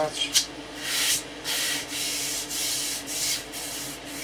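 A hand rubbing wood-grain veneer down onto a loudspeaker cabinet in several long hissing strokes, pressing the veneer flat onto the board. A sharp tick comes just before the strokes begin.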